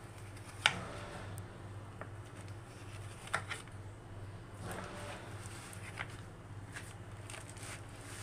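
A knife cutting through a slab of still-soft homemade soap in a plastic-lined baking tray: quiet scraping strokes with a few sharp clicks, the loudest about a second in. Under it runs a steady low hum.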